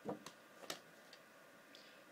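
A few light plastic clicks and taps as a VHS cassette is picked up and turned over, the first click the loudest, then mostly quiet with faint ticks.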